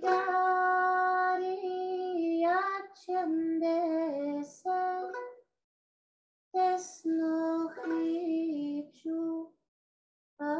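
A woman singing solo in long held notes and short phrases. The voice stops completely about five and a half seconds in and again near the end.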